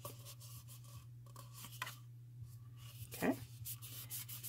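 Faint rustling and rubbing of paper as hands press and smooth a glued designer-paper wrap around a paper cup, with a few light handling clicks over a steady low hum.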